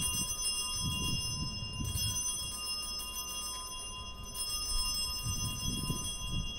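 A small altar bell ringing at the elevation of the chalice: one long, steady high ring with several clashing overtones, over a faint low rumble.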